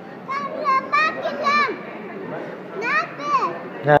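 A young child's high-pitched squeals: a quick run of short rise-and-fall notes in the first two seconds, then two more about three seconds in, over a steady background hubbub.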